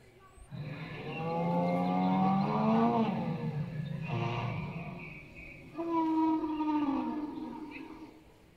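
Animatronic long-necked sauropod dinosaur's recorded call: two long, low, drawn-out calls, the first drifting slightly upward in pitch, the second starting about six seconds in and falling away near the end.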